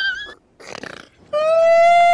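A short, high, wavering cry, then a loud, long, steady howl-like cry from a little past a second in, ending in a sharp click.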